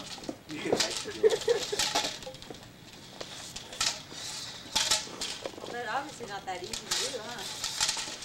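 Faint, scattered voices from a small group of bystanders, with a few sharp clicks and knocks.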